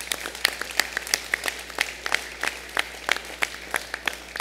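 Audience applauding, with many individual hand claps standing out irregularly.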